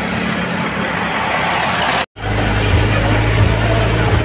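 Road noise mixed with loud DJ music from a tractor's sound system. About two seconds in it cuts off suddenly and gives way to the steady low drone of a bus engine heard from inside the bus.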